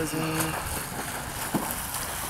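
A man's voice finishes a word, then a steady rushing outdoor background noise carries on alone.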